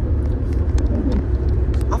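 Steady low rumble of a car on the move, heard from inside the cabin: road and engine noise.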